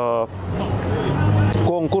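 A man's voice briefly at the start and end, with a steady low rumble of outdoor background noise filling the pause between his phrases.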